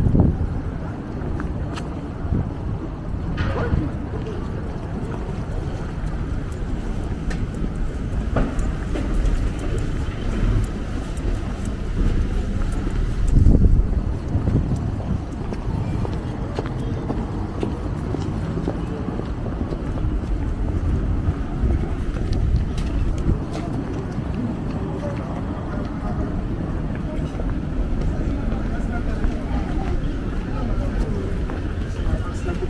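Night street ambience on foot: indistinct voices of passers-by over a steady low rumble, with light footsteps on paving. A brief louder low surge comes about 13 seconds in.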